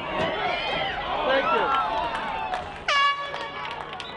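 Air horn blast at a lacrosse game, short and on one steady pitch after a brief upward scoop at the start, about three seconds in, over the chatter of players and spectators.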